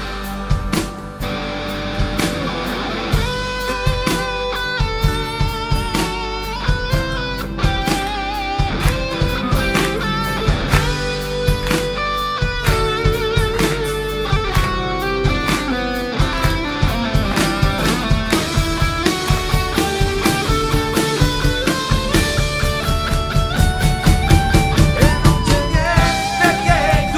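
Live rock band playing an instrumental break: a steady drum-kit beat, bass, strummed acoustic and electric guitars, and a lead melody line with vibrato over them, building near the end.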